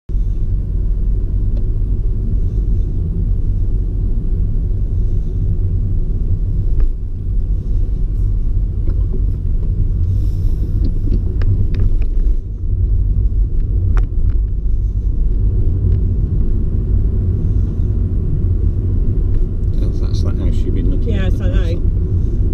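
Steady low rumble of a car driving slowly, heard from inside the cabin: engine and tyre noise on the road. There are a few faint knocks along the way.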